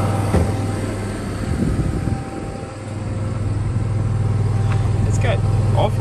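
An engine running steadily with a constant low hum, easing off briefly about two seconds in; a man's voice starts near the end.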